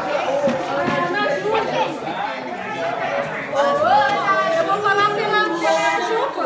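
Speech only: several people talking at once in overlapping chatter, with voices louder in the second half.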